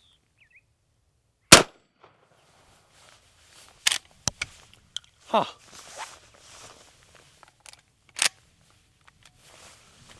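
A single loud shot from a short-barreled Henry Axe lever-action .410 shotgun about one and a half seconds in. About two and a half seconds later come sharp metallic clacks of the lever being worked, extracting and ejecting the spent shell, and one more clack near the end.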